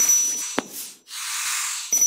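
Animated subscribe-button sound effects: a whoosh with a high ding, a mouse click about half a second in, then a second whoosh from about a second in, with another ding near the end.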